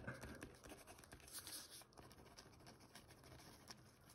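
Faint scratching of a Stabilo Palette gel pen writing on paper.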